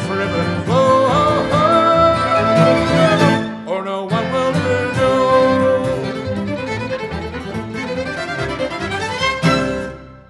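Acoustic guitar and a string quintet of two violins, viola, cello and double bass play the closing instrumental bars of an upbeat Cape Breton folk song, with the violins carrying the melody. It ends on a final accented chord about nine and a half seconds in that rings away.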